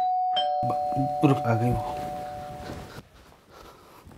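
Doorbell chime: two tones that sound together, ring on and fade out over about three seconds.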